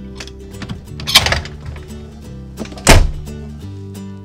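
Background music with steady held notes, over which a motorhome's entry door is shut: a sharp clatter about a second in, then a heavy thunk of the door closing about three seconds in.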